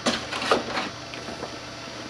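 A large vinyl wrap graphic sheet rustling and crackling as it is handled and positioned by hand on a fiberglass hood. Two sharper crackles come at the start and about half a second in, then a few fainter ticks over a low room hum.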